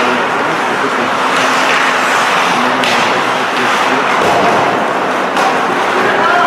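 Ice hockey arena during play: a loud, steady wash of noise with faint, indistinct voices. Two sharp knocks stand out, about three seconds in and again near the end, typical of stick or puck hits during play.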